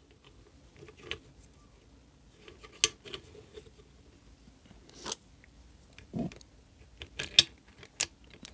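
Handling noise as a pole is pressed and seated into plastic pipe clamps on a metal base plate: scattered small clicks and knocks, the loudest about three seconds in.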